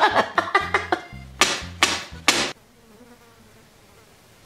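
A wailing voice and three short, loud noisy bursts in the first half, then faint buzzing of flies for the rest.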